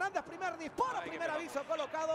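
A man's voice talking, quieter than the louder talk on either side.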